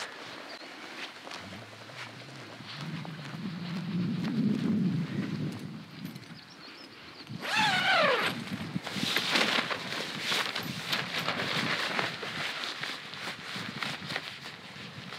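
Nylon tent fabric rustling and flapping as the door of a Hilleberg Rogen tent is handled and opened, over steady wind rumble. About seven seconds in, a single call lasting about a second slides down in pitch.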